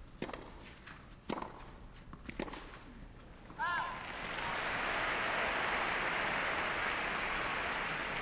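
Tennis ball struck back and forth in a rally, sharp hits about a second apart. At the end of the point the crowd breaks into steady applause and cheering.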